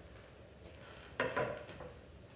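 A brief clatter of light knocks about a second in, followed by a couple of softer taps: the handling noise of a player settling his saxophone at a music stand on stage.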